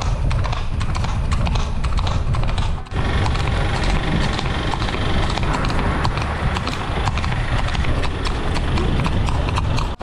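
Horse's hooves clip-clopping on an asphalt road as it moves ahead at a steady pace, over a low steady rumble, with a brief break about three seconds in.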